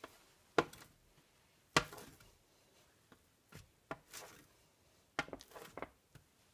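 Knife cutting through a homemade seitan roast, the blade knocking against the baking sheet in sharp, irregular taps. The two loudest come in the first two seconds, and a quicker cluster comes near the end.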